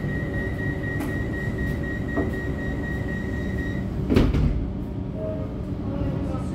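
Inside an EDI Comeng electric train standing at a platform: a steady high warning tone sounds for about four seconds over the carriage's constant hum, then the sliding doors shut with a loud thump about four seconds in.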